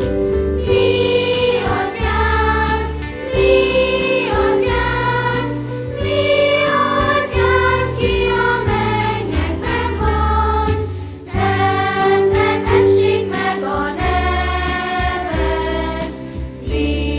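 Children's choir singing a song, young girls' voices carrying the melody over a steady, held instrumental accompaniment in the low range.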